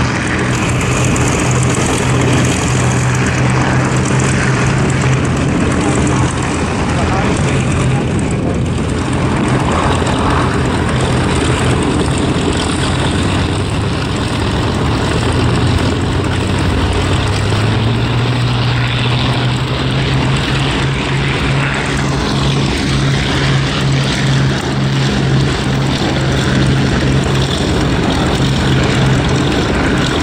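Piston engines of a pair of Spitfire fighters running at high power as they take off and fly past, a loud steady propeller drone. A little over halfway through, the engine note rises in pitch.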